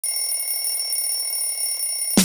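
Alarm clock bell ringing continuously at an even, loud level.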